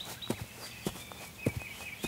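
Footsteps of people walking at a steady pace, three clear steps about 0.6 seconds apart.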